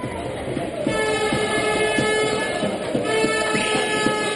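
A horn in the crowd sounds one long, steady note, starting about a second in, over the noise of a handball crowd and a steady beat.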